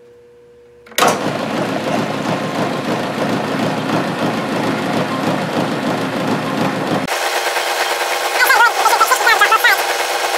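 Milling machine switched on about a second in and running loudly. Its sound changes sharply about seven seconds in, and near the end squeaky chirping comes in as the center drill cuts into the metal part.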